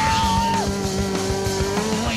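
Punk rock music: fast drumming under electric guitar, with long held notes that step down in pitch.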